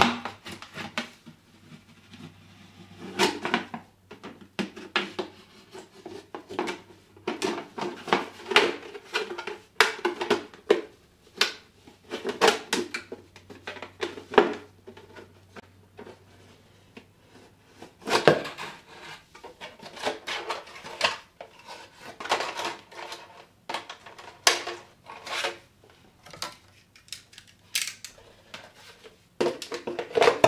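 A thin plastic jug being cut open by hand, the plastic crackling and clicking in irregular bursts with short pauses.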